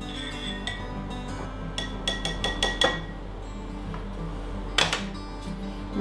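Metal tongs clinking and scraping against a glass jar as a pickled egg is fished out, a few sharp ringing clinks about two to three seconds in and again near the end, over steady background music.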